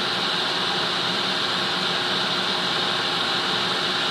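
Soldering fume extractor fan running steadily, an even hiss of moving air.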